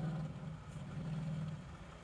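A faint, low steady hum that breaks off briefly and fades out near the end.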